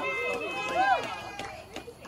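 A few people's voices calling out over one another, one rising and falling in pitch like a whoop, fading away after about a second and a half. A few sharp taps follow near the end.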